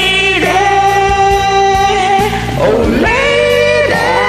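Karaoke duet singing over a backing track: a long held sung note for about two seconds, then the voice slides up into a new held note about three seconds in.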